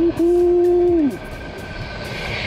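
A man's voice holding one long exclamation for about a second, dropping in pitch as it ends. After it comes the rolling and wind noise of the Yokamura i8 Pro electric scooter under way, with a faint steady whine.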